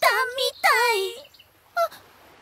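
A young woman's high-pitched, squawky voice exclaiming in surprise, in two outbursts with sliding pitch and a short third cry near the end.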